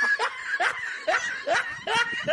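A man laughing: a run of short, rising ha-ha pulses, about two or three a second.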